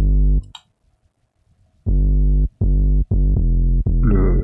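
Synth bass line played back on its own: The Sub bass plugin layered with a second bass synth. One note sounds at the start, then comes a gap of about a second, then a run of short notes.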